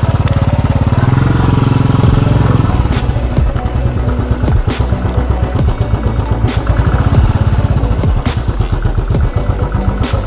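Royal Enfield motorcycle's single-cylinder engine running with an even pulse. From about two seconds in, background music with a regular beat plays over it.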